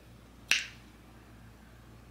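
A single sharp finger snap about half a second in, over quiet room tone.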